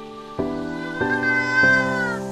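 A domestic cat's single long, drawn-out meow starting about a second in and sliding down at its end, over background music with steady chords that change every half second or so.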